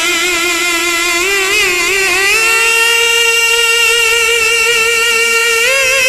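A man's voice holding one long sung note of naat recitation, with a wavering vibrato. The note steps up in pitch about two seconds in and again near the end.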